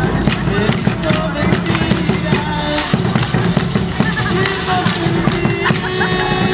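Live music for a traditional folk dance: a held melody line that steps between notes, over many quick irregular clicks from the dancers' hand rattles and steps, with voices mixed in.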